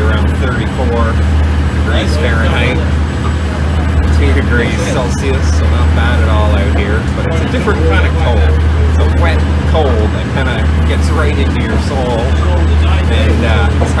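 A lobster boat's engine running steadily under way, a constant low drone heard from inside the wheelhouse, with indistinct voices talking over it.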